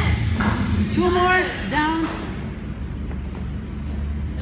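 Two short vocal calls, about a second apart, over steady low background noise in a large gym.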